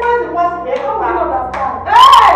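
Hand claps, a few sharp claps about a second apart, under a woman's raised, agitated voice that grows loudest near the end.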